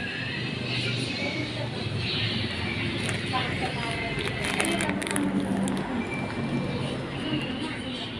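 Indistinct voices with music in the background, and a few short clicks in the middle.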